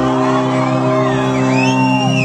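A live band holding a sustained chord as a song ends, the bass dropping out right at the start, while the crowd whoops and cheers more and more toward the end.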